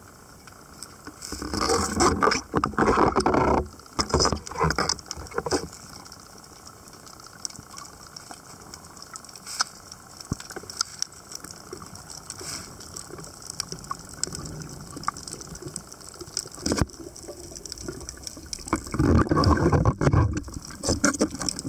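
Underwater water noise picked up by a camera in its housing: loud rushing, bubbling bursts from about one and a half to five and a half seconds in, then a quieter stretch with faint scattered clicks, and more loud bubbling and water rush near the end.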